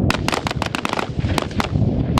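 Rapid, irregular rifle fire from several M4 carbines (5.56 mm) shooting at close range: about a dozen sharp single shots in two seconds.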